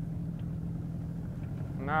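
Small boat's outboard motor idling steadily, a low even hum.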